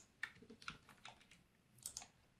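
Faint computer keyboard keystrokes: about six separate clicks, irregularly spaced.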